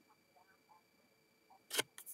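Cardboard trading cards being handled and flipped: faint rustles and ticks, then one sharp snap of a card near the end.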